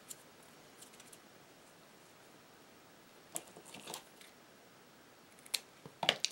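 Scissors snipping satin ribbon, a few short faint snips with quiet between them, the loudest a little past halfway and another near the end.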